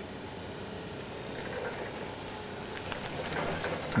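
Forklift running as it rolls toward and onto a shoe on the pavement, a steady rumble that grows slightly louder, with a few sharp clicks in the last second.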